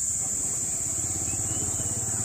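Ford 3600 tractor's three-cylinder diesel engine idling steadily with an even, low, pulsing beat.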